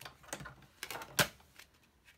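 Sizzix Big Shot hand-cranked embossing machine being turned, feeding a plastic embossing folder with an acetate window sheet through its rollers: a run of irregular clicks and knocks, the loudest just over a second in.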